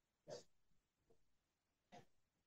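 Near silence, with one faint, brief sound about a third of a second in.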